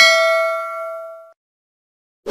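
A notification-bell ding sound effect: one bell-like chime, already struck, ringing out and fading away over about a second and a half.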